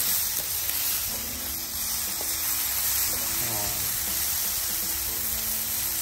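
Diced bacon and onion sizzling steadily in hot fat in a cast-iron skillet, stirred with a wooden spatula.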